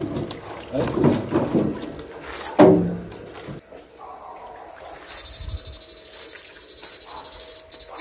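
A man's voice for the first few seconds, then a 16-FET, two-transformer electronic fish shocker running with a steady high whine that pulses evenly about five times a second, set to its low-frequency setting. A brief low thud comes about halfway through.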